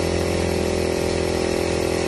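A small engine-driven power sprayer pump runs at a steady drone. Under it is the hiss of a turbo spray wand throwing a mist of pesticide spray.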